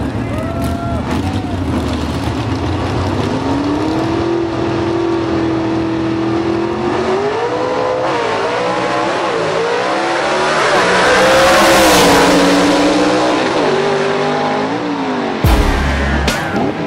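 Two gasser drag cars' engines held at high, steady revs on the starting line, then launching and accelerating away with the pitch rising and dropping through gear changes. The sound is loudest a few seconds after the launch, then the pitch falls as the cars pull away.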